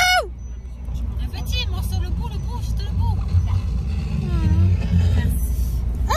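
Steady low rumble of a car heard from inside the cabin, with faint music and quiet voices over it.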